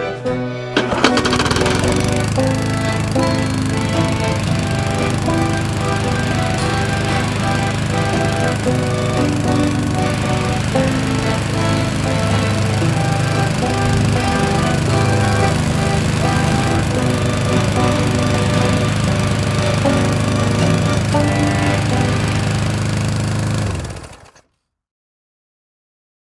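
Walk-behind gas lawn mower engine catching about a second in and then running steadily, under country-style music; both cut off abruptly just before the end.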